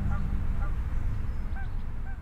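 A few short bird calls at irregular intervals over a steady low rumble.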